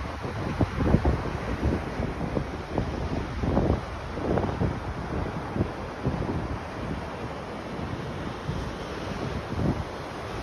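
Wind buffeting the microphone in irregular gusts over the steady wash of ocean surf breaking on a beach.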